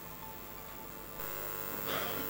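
Faint background music with light ticking. About a second in, a steady mains hum and hiss from the hall's sound system comes up and holds.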